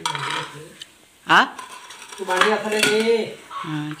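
Steel cookware and utensils clinking and clattering as they are handled, with one sharp metallic clank about a third of the way in. Voices talk over it.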